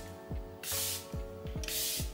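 Charlotte Tilbury Airbrush setting spray misting from its bottle in two hisses about a second apart, over background music with a soft beat.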